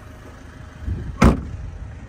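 Vauxhall Mokka X tailgate swung down and shut with a single loud slam about a second in, over a steady low hum.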